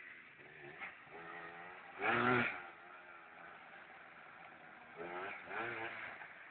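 Yamaha Blaster quad's two-stroke single-cylinder engine revving in the distance as it comes along a muddy track, rising and falling in pitch, with the loudest rev about two seconds in and another about five seconds in.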